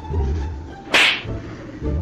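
A single short, sharp crack about a second in, over a steady low bass from background music.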